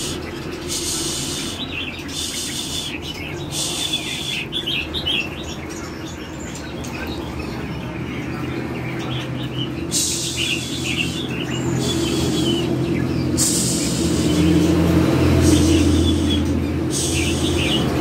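Caged red-whiskered bulbuls calling in short chirping phrases, broken by several harsh hissing bursts about a second long. A steady low hum runs underneath and swells for a few seconds near the end.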